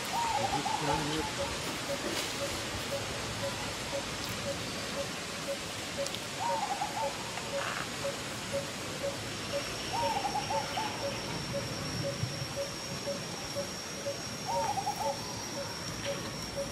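Outdoor animal sounds: a steady run of short low hoots about two a second, with a few brief wavering calls, and from about halfway a thin steady high whine.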